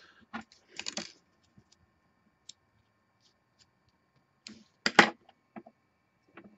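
Small clicks and scrapes of fingers handling a metal rebuildable atomizer deck and its thin kanthal coil wire, with a brief rustle about a second in and a sharper, louder click about five seconds in.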